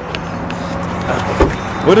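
Steady low hum of an idling vehicle engine, with one dull thump about halfway through.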